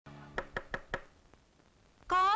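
Four quick, evenly spaced knocks on a door, all within about half a second.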